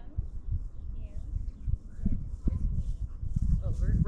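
Faint, distant talking, a voice too far off for its words to be made out, over a steady low rumble that grows a little louder in the second half.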